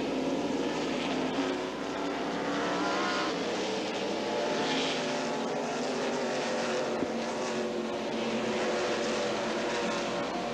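A pack of NASCAR Winston Cup stock cars' V8 engines running loud together on track, with engine pitch rising about three seconds in.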